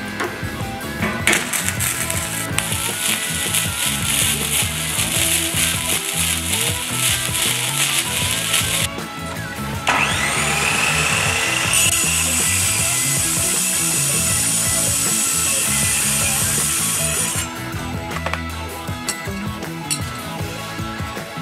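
Gasless flux-core MIG welder arc crackling steadily for several seconds while a seam is run on steel plate. Then a metal-cutting chop saw starts, its motor whining up to speed, and cuts through steel stock with a loud steady scream for about five seconds. Background music plays throughout.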